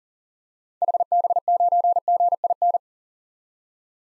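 Computer-generated Morse code at 40 words per minute: a single mid-pitched beep keyed in quick dots and dashes for about two seconds, from about a second in, spelling the amateur radio call sign HB9GIN.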